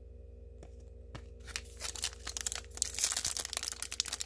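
A trading-card pack's wrapper being crinkled and torn open by hand. The rustling starts about a second and a half in and gets busier toward the end, over a faint steady hum.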